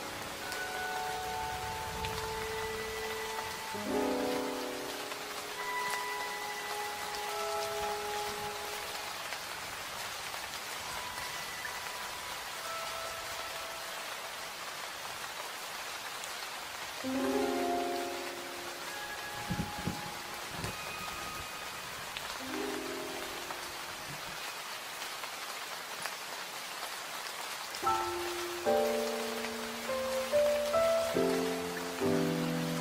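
Steady rain falling, with a slow, sparse relaxation-music melody over it: small groups of soft held notes every few seconds and long gaps where only the rain is heard.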